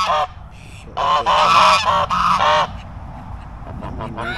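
Domestic geese honking: one call right at the start, then a loud run of honks from about a second in that lasts over a second and a half.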